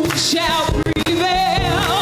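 Gospel choir singing with instrumental accompaniment, the voices held and wavering with vibrato.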